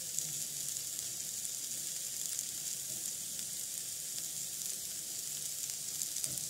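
Potato, cauliflower and pea sabzi sizzling steadily as it fries in a pan.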